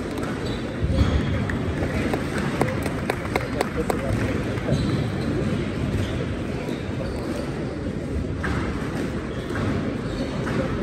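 Spectator chatter in a large, echoing hall around a squash court, with several sharp knocks in the first half.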